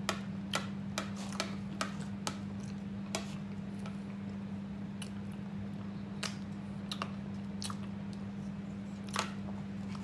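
Quiet eating of banana pudding: irregular soft clicks and taps of spoons and mouths, a slightly louder one near the end, over a steady low hum.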